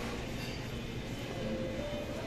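Indoor mall ambience: a steady low rumble with faint background music, a few held notes coming through near the end.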